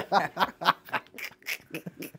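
Laughter: a run of short, quick bursts of a man's laugh that trail off toward the end.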